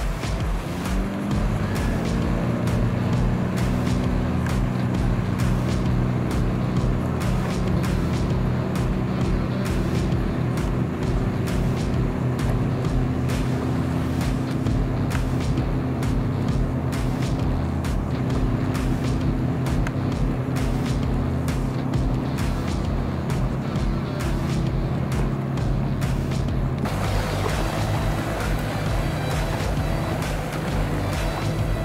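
Outboard boat motor running at a steady speed, its pitch rising briefly about a second in and then holding. The sound changes abruptly near the end.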